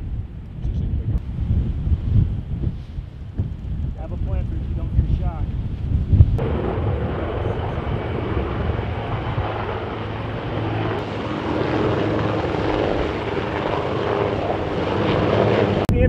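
Wind rumbling on the microphone. About six seconds in, a military helicopter's engine and rotor noise comes in and grows gradually louder.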